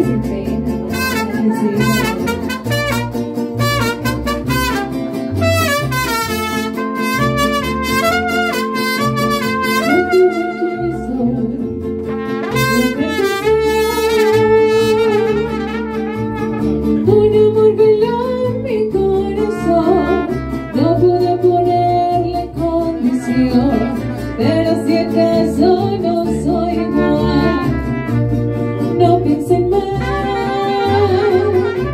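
A mariachi band playing live, with trumpets carrying the melody over strummed guitar and a pulsing bass line.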